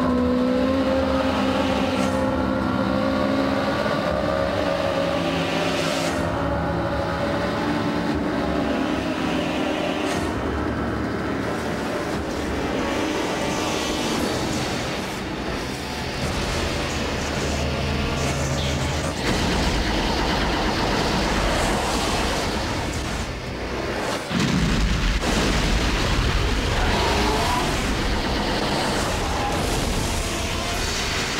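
Sci-fi soundtrack music with long held notes and slow sweeping tones, giving way about two-thirds of the way in to deep rumbling and whooshing space-battle sound effects. A sudden loud blast comes near the end.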